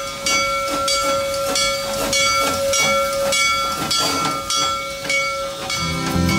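Serengeti Express park train locomotive passing close by at a level crossing: a bell rings about twice a second over a steady hiss of steam. A steady tone under it stops about halfway through.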